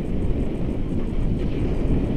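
Wind rushing over a handheld action camera's microphone in paraglider flight: a steady, loud low rumble with no breaks.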